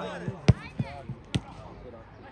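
Football being kicked: a hard, loud strike of the ball about half a second in and a second sharp strike a little under a second later, with lighter touches between, over players' shouts.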